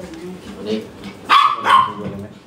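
A small dog barking twice in quick succession, short sharp yaps about a second and a half in.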